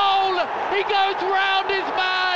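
A football commentator shouting excitedly at a goal, his voice high and strained in a run of short calls that each drop in pitch at the end.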